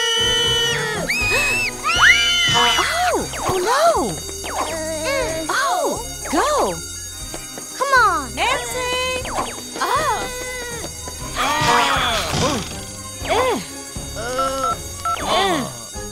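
Cartoon background music under characters' wordless crying and wailing, with many rising-and-falling cries.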